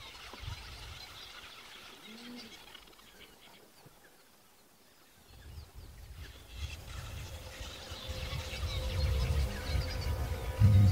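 Wild birds chirping and calling in the bush, with one lower arched call about two seconds in. A low rumbling noise builds through the second half, under more chirps.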